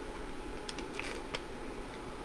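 Steady low background noise with a few short, faint clicks around the middle.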